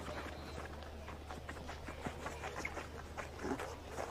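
Faint, irregular taps and clicks over a low steady stadium hum: a field hockey player dribbling the ball on artificial turf as she runs in on the goalkeeper.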